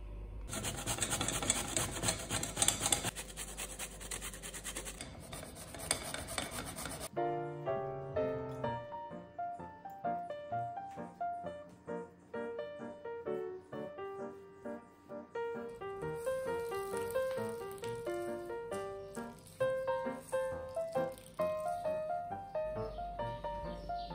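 Zucchini being grated on a flat stainless-steel hand grater: quick, repeated rasping strokes for about the first seven seconds. After that comes background music with a light plucked melody.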